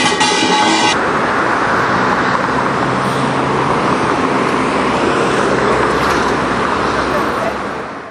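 Steady street traffic noise from cars driving along a busy multi-lane road. For about the first second, music with a drum plays and then cuts off abruptly; the traffic fades out near the end.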